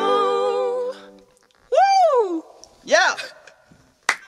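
The last sung note, held with vibrato over a ringing classical guitar chord, fades out about a second in. Then come two short vocal exclamations, each sweeping up and back down in pitch.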